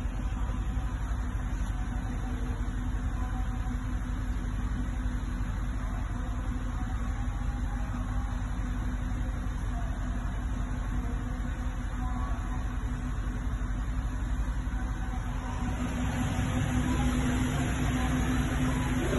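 BMW X6 M50d's three-litre straight-six diesel engine idling steadily in Park at about 1000 rpm, heard from inside the cabin; it grows a little louder near the end.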